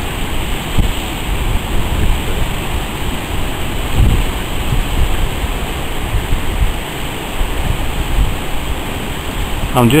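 Steady rush of surf breaking on a river-mouth bar, with uneven gusts of wind buffeting the microphone.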